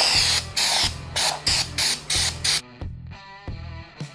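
Aerosol can of CRC Extreme Duty Open Gear & Chain Lube spraying in a quick series of about seven short hissing bursts, stopping after about two and a half seconds.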